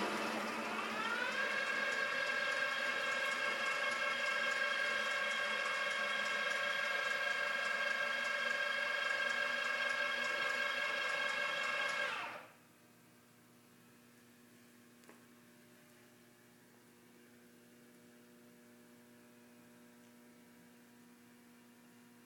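Electric drive of a Pratt & Whitney deep-hole drilling machine running with a whine. It rises in pitch over the first second or so, holds steady, and cuts off suddenly about twelve seconds in, leaving a faint steady hum.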